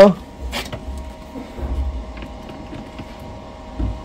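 Steady electric hum of a Lewanda B200 battery load tester's cooling fan, which keeps running after a heavy-current test. Over it come a couple of light clicks and, near the end, a dull thump as a tester clamp is handled and seated on the battery terminal.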